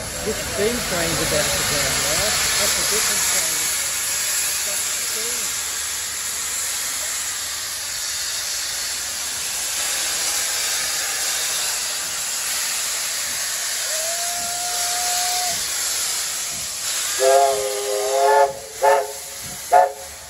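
Steam locomotive 3526, a NSW 35 class 4-6-0, hissing steam steadily as it drifts slowly into the platform. Near the end it sounds its whistle in four short, loud blasts.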